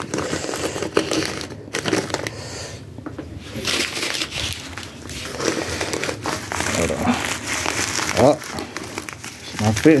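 Plastic commissary food packets crinkling and rustling as they are handled and stacked on a shelf, with a brief voice near the end.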